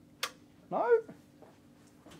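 A single sharp click of a rack-mount industrial computer's power switch being pressed; the machine does not start. A faint steady hum runs underneath.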